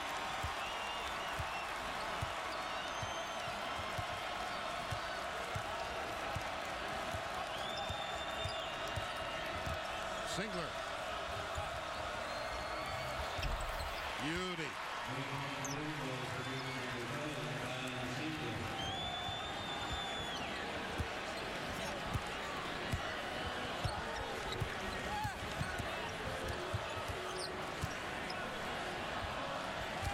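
Steady crowd noise in a packed basketball arena, with a ball dribbling on the hardwood court and a few brief high squeaks from players' shoes.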